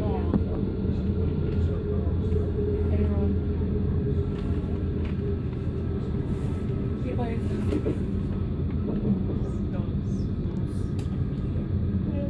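Steady low rumble of a moving passenger train heard from inside the carriage: wheels running on the track, with faint voices in the background at times.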